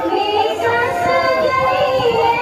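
A song with a high-pitched voice singing a wavering melody over music, the kind played for a stage dance.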